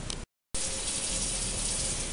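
Kitchen faucet running steadily, water pouring into the sink. It starts after a brief silence near the beginning.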